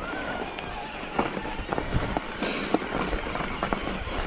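Mountain bike rolling down a loose, rocky trail: tyres crunching over gravel, with frequent knocks and rattles as the bike strikes stones.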